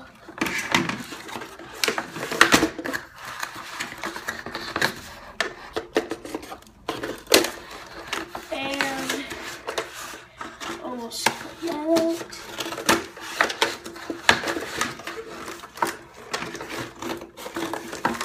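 A Nerf Retaliator toy blaster's plastic parts and its cardboard packaging tray being handled and pulled apart, with scissors cutting at the cardboard: irregular rustling, plastic clicks and knocks throughout.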